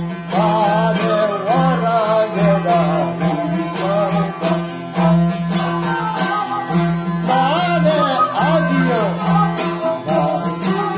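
Balochi suroz, a bowed folk fiddle, playing a wavering, sliding melody over a damburag, a long-necked lute, strummed in a steady rhythm of about three strokes a second with a low drone.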